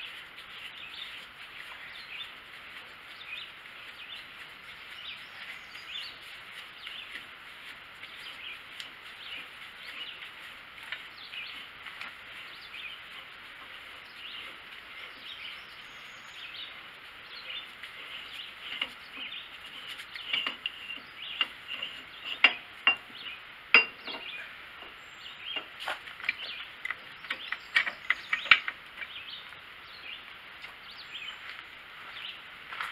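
Birds chirping steadily. In the second half, a run of sharp metal clicks and knocks from handling the hydraulic cylinder's unthreaded gland.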